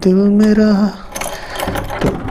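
A man's voice holding a sung note for about a second, then metallic clicking and rattling as keys work a padlock on a sliding steel door bolt, with a short laugh.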